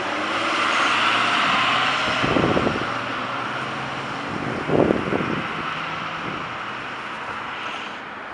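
City street traffic: vehicles running and moving through an intersection, with two short louder bursts about two and a half and five seconds in.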